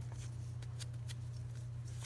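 Soft dabbing and rustling of an Embossing Buddy, a fabric powder pouch, tapped against the sticky backs of washi tape petals to make them less sticky, over a steady low hum.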